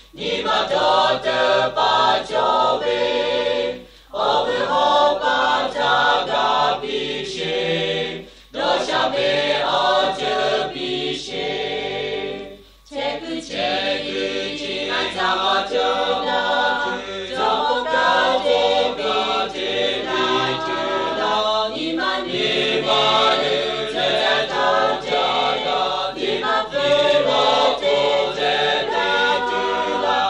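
A choir singing, in long phrases broken by brief pauses about 4, 8 and 13 seconds in.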